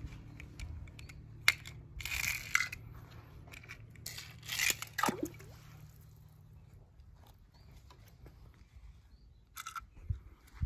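A small die-cast toy car dropping into a swimming pool: a splash about four seconds in, ending in a short falling plop. A sharp click and a brief burst of hiss come before it.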